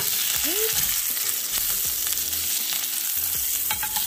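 A ribeye steak sizzling steadily in its own rendered fat in a non-stick aluminium pan, with no oil added, while it is turned over with silicone-tipped tongs onto its seared side.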